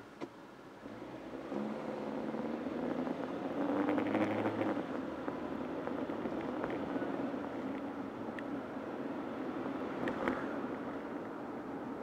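A car's engine and road noise heard from inside the cabin as the car pulls away from a standstill. The engine note climbs for a few seconds, then settles into steady driving noise. Two short clicks come right at the start.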